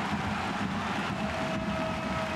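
Stadium crowd ambience after a goal: a steady, even roar of noise, with a single held tone coming in a little past halfway.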